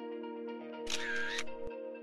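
Gentle instrumental background music, with a camera-shutter sound effect about a second in.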